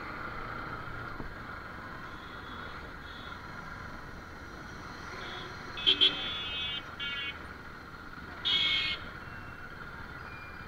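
Motorcycle running at low speed through street traffic, a steady engine and road hum, with several vehicle horn blasts around it: two quick beeps and a longer toot about six seconds in, a short one just after, and a louder half-second blast near the end.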